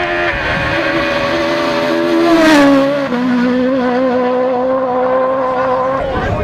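Toyota rally car at high revs approaching and passing close by, loudest about two and a half seconds in. Its engine pitch drops as it goes past, then holds steady as it pulls away.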